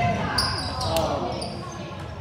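Sneakers squeaking in short high chirps on a hardwood basketball court, with a basketball bouncing during play.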